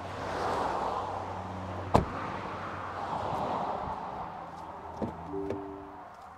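A car's rear door shut with one sharp thud about two seconds in, followed by fainter clicks near the end as the driver's door is opened.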